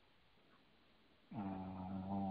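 Near silence for about a second. Then a man's voice holds one long, steady, low-pitched hesitation sound that runs on into his speech.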